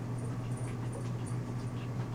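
A dog making faint sounds over a steady low hum.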